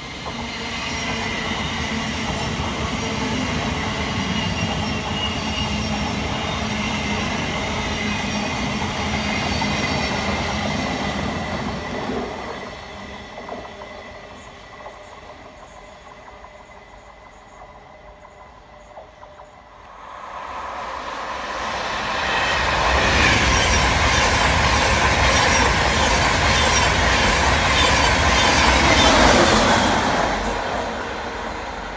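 An electric multiple unit passing with a steady high traction whine and rail noise for the first dozen seconds, then fading. From about 20 s a Class 91 electric locomotive hauling an express passes at speed, louder and fuller, rushing and rumbling, loudest near the end.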